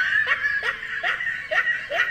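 High-pitched laughter, a run of short rising laughs about two a second.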